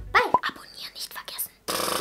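A girl's voice making quick, unclear whispered and spoken sounds, then a sudden loud, harsh noise of about a second, starting near the end.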